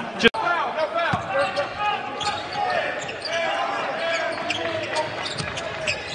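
Live basketball game sound in an arena hall: a ball bouncing on the hardwood amid many overlapping voices from players and crowd. The audio drops out for a moment about a third of a second in.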